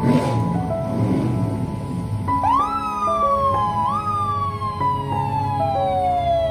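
Fire engine siren sounding twice: it rises quickly a little over two seconds in, slides slowly down in pitch, then rises again about a second and a half later and slides down once more. Music with steady held notes plays under it.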